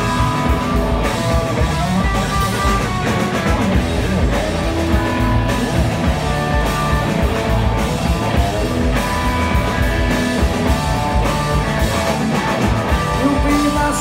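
Live rock band playing loud: electric guitar, bass and drums in an instrumental passage between sung verses.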